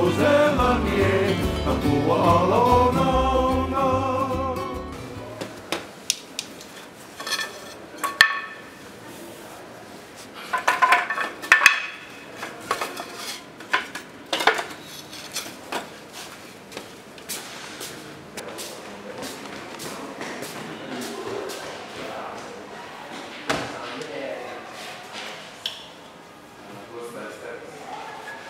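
Music with singing for the first five seconds, then it stops. After that come scattered sharp knocks and clinks of hard objects being handled, some ringing briefly, with a cluster about ten to twelve seconds in.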